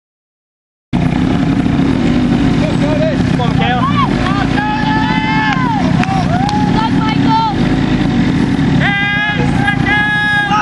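Several youth quads (ATVs) running at idle together, a steady low engine hum that starts abruptly about a second in, with people's voices over it.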